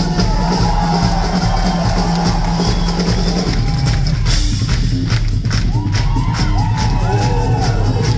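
Live folk band with upright double bass, drum kit and acoustic guitar playing an upbeat instrumental passage with a steady beat, the crowd cheering and whooping over it.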